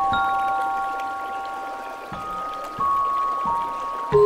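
Slow relaxation music of bell-like chime notes. About four notes are struck one after another, stepping downward in pitch, and each is left ringing. Under them runs a steady hiss of running water.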